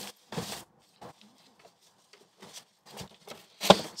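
Soft nylon tester case being handled by hand: faint scattered rustles and scuffs of fabric as a hand reaches into its pockets, with a sharper tap near the end.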